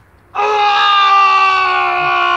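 A man's long, high-pitched scream, starting about a third of a second in and held steady, sagging slightly in pitch.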